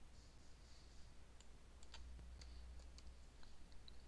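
Faint, scattered clicks of a computer keyboard and mouse as text is typed and a dialog button is clicked, over a low steady hum.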